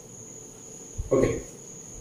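A faint, steady, high-pitched whine continues through a pause in speech. A short voice sound from the teacher comes just after a second in.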